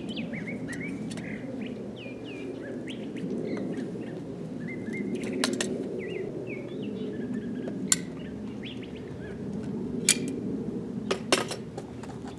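Small birds chirping over and over in short, quick calls, over a steady low background noise. A few sharp clicks come in the second half, several close together near the end.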